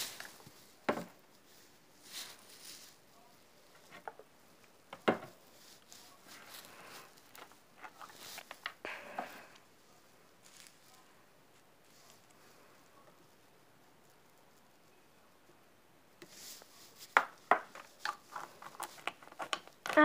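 Scattered small clicks, taps and rustles of a plastic water bottle and its cap being handled while glitter is added, with a quiet stretch in the middle and a run of clicks near the end.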